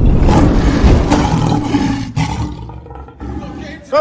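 A lion roar sound effect: one loud, deep roar that fades out over about three seconds.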